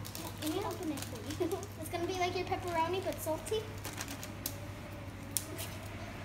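Soft, low child's voice murmuring, with sharp clicks of scissors snipping a small plastic packet open, mostly in the second half, over a steady low hum.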